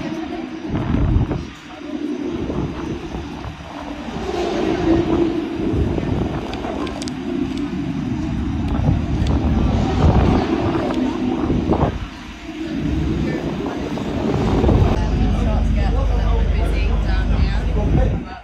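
People talking in a busy outdoor crowd, over a steady low rumble that grows heavier near the end.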